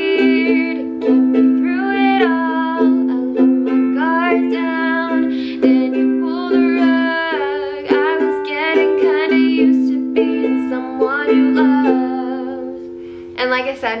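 A woman singing a slow pop melody while strumming chords on a ukulele. The chords ring steadily under the voice. The singing stops near the end.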